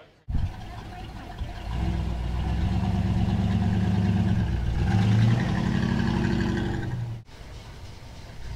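Engine of a classic early-1960s Chevrolet police sedan running low and steady as the car rolls slowly past. It starts abruptly, grows louder a couple of seconds in, and cuts off suddenly near the end.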